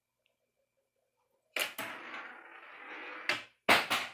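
Handling noise right at the microphone: two sharp knocks about one and a half seconds in, a rustling scrape lasting about a second and a half, then three more sharp knocks near the end, the last ones the loudest.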